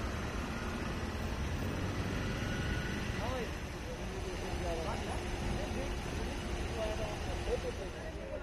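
Engines of queued cars and an auto-rickshaw running, a steady low rumble, with indistinct voices talking from about three seconds in.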